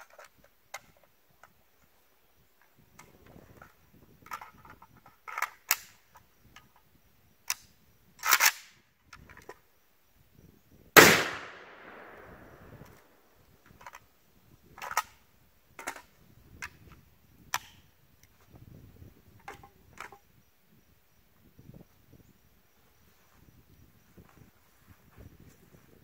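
Rifle emptying its magazine in single shots: about a dozen sharp cracks, unevenly spaced one to three seconds apart. One shot about eleven seconds in is much louder than the rest and rings out in a long echo.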